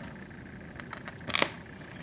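Small plastic clicks from handling a Revoltech Batman action figure while one of its swappable hands is pulled off the wrist joint, with one brief, louder click about a second and a half in.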